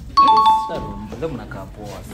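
A two-note ding-dong chime sound effect, a higher note then a lower one, starting a fraction of a second in and ringing for about a second, over voices talking.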